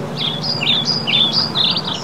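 A small songbird singing a quick run of short, high chirping notes that step up and down in pitch, over a steady low background rumble.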